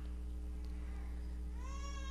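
Steady low electrical hum, with a faint high-pitched animal call that rises and then holds, starting near the end.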